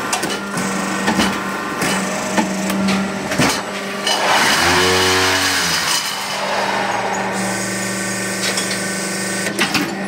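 Fly ash brick making machine running: a steady motor hum with scattered metallic knocks, and a louder rushing surge with a low drone between about four and six seconds in.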